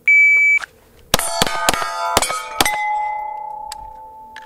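Electronic shot timer beeps once, then a 9 mm Steyr L9-A1 pistol fires five shots in about a second and a half, each hitting a steel plate that clangs. The last plate rings on as a steady tone that slowly fades, ending a string timed at about 2.56 seconds.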